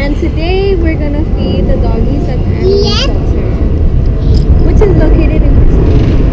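A person talking indistinctly in a few short stretches over a loud, steady low rumble.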